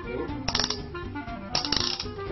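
Background music, with two short bursts of rapid clicking about a second apart from the Ring Crusher magic prop being turned by hand.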